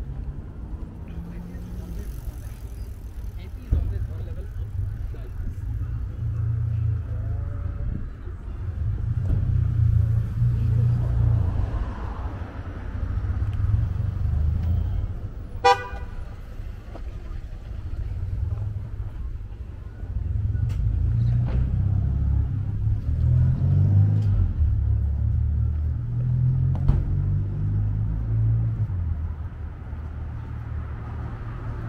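Road traffic passing on a city street: a low engine and tyre rumble that swells and fades as several vehicles go by. A single short car horn beep sounds about halfway through.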